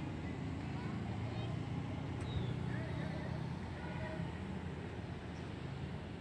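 Outdoor park ambience: a steady low rumble, with faint distant voices and a few faint bird chirps.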